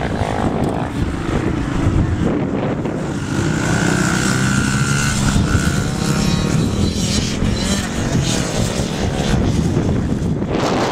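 Small 50cc youth dirt bike engine running and revving up and down as it rides the track, its pitch rising and falling with the throttle.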